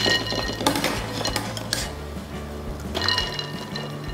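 Wire spider strainer clinking against a glass bowl and ice cubes as boiled eggs are tipped into ice water. There are several sharp clinks in the first two seconds and a few more about three seconds in.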